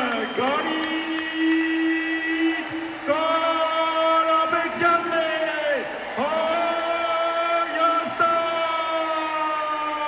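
A single amplified voice making long, drawn-out held calls, three of them, each held two to three seconds and falling off at its end.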